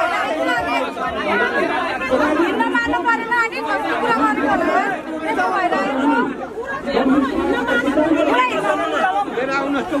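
A crowd of people talking over one another at once, many overlapping voices with no single clear speaker.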